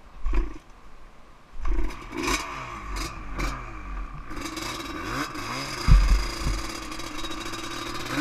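Yamaha Banshee quad's twin-cylinder two-stroke engine revving up and down in uneven blips, loud from about a second and a half in, with a sharp thud near six seconds.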